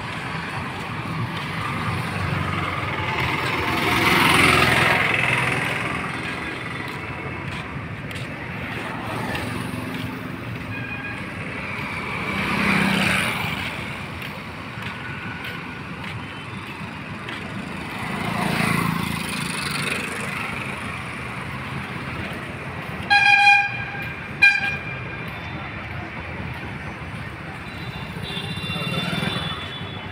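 Roadside traffic, with vehicles passing one after another. About two-thirds of the way through, a vehicle horn gives two short honks.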